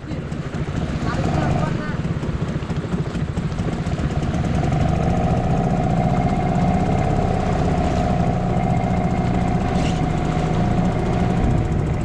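Hangkai 6 hp outboard motor running under way, pushing an inflatable boat; its steady hum builds over the first few seconds and then holds level.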